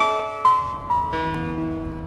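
Slow piano music: a few held notes that ring and die away, the music fading toward the end.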